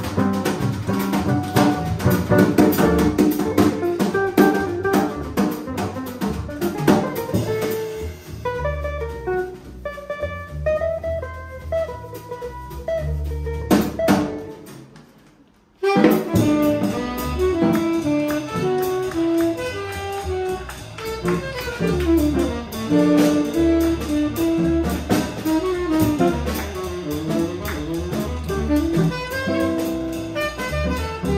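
A jazz quartet of archtop guitar, upright bass, drum kit and tenor saxophone playing live. The guitar leads over bass and drums at first; about halfway through the sound fades almost away and then cuts back in suddenly, with the tenor saxophone now leading.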